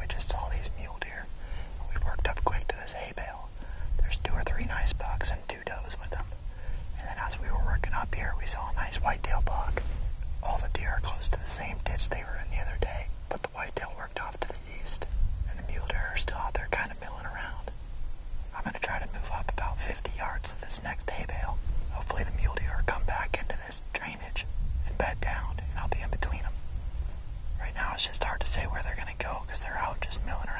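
Men whispering to each other in short, hushed exchanges, with a steady low rumble underneath.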